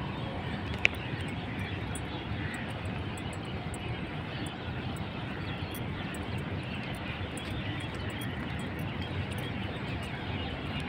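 Steady rumble of city traffic, with one sharp click about a second in.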